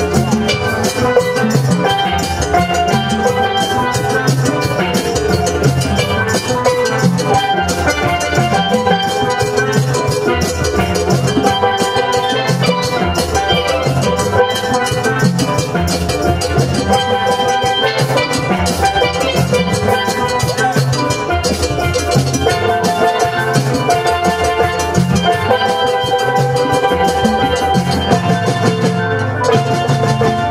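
A steel band playing an upbeat tune: several steel pans carry the melody and chords over drums keeping a steady beat.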